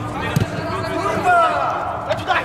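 A football struck by a foot once, a single sharp thud a little under half a second in, with players shouting around it.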